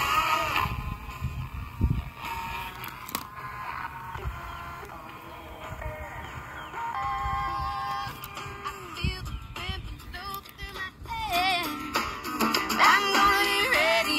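Music with singing from an FM station, playing through the small speaker of a vintage Realistic (Radio Shack) pocket AM/FM transistor radio that has just been given a new battery: the radio works. The station changes as the FM dial is turned.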